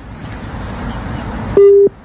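Steady outdoor noise that swells over the first second and a half, then a short, loud, single-pitched beep lasting about a third of a second that starts and stops sharply.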